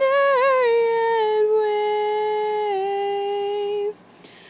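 A female soprano voice holding one long high note without words. It wavers at first, then settles, dips slightly lower twice, and cuts off just before the end.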